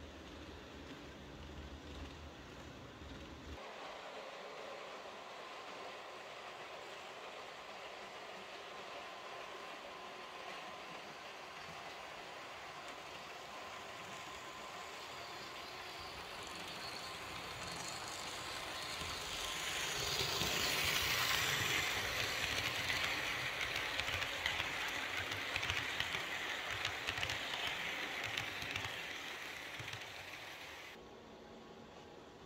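Märklin H0 model electric locomotive (E 424, no sound module) running with its train of coaches on the model railway track: a steady mechanical running noise of motor and wheels on the rails. It grows louder from a little past halfway as the train comes close, stays loudest for several seconds, then eases slightly near the end.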